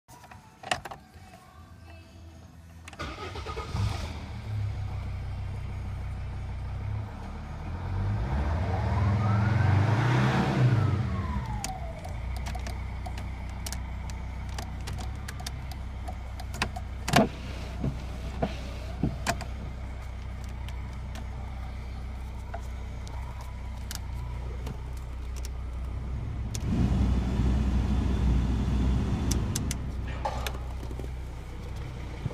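Mercedes-Benz ML's engine starting about three seconds in, then idling, with one rev that rises and falls about ten seconds in. A few sharp clicks follow, and the sound gets louder near the end.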